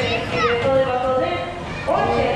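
Children's high-pitched voices and calls on a running carousel, over the ride's music.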